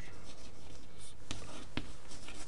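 Chalk writing on a chalkboard: a few short scratching, tapping strokes as letters are written.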